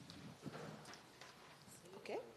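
Near silence: faint room tone with a few light clicks or knocks, about one every half second.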